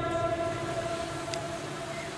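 A steady, sustained tone at the pitches of the preacher's last words, slowly dying away: the reverberant tail of his amplified voice ringing on through the sound system in a pause.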